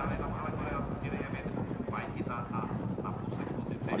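Outdoor racecourse sound under a live steeplechase broadcast: a steady low rumble with wind on the microphone and faint distant voices.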